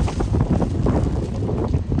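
Wind buffeting the camera microphone, a steady low rumble.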